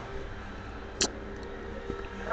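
Steady low background hum from the recording, with one short hiss about a second in.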